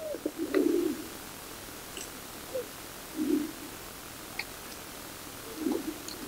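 A pigeon cooing: three short, low coos about two and a half seconds apart, with a few faint clicks between them.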